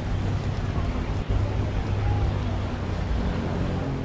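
Steady low drone of a boat engine, heard under wind noise on the microphone and rushing water.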